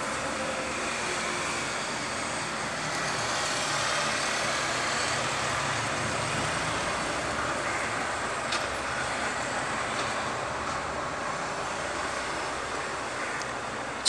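Steady background noise of road traffic, an even, unbroken wash of sound that swells slightly partway through.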